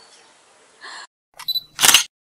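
Faint outdoor background that cuts off abruptly about a second in. It is followed by the sound effects of an animated channel intro: a couple of short clicks, then one loud, brief burst near the end.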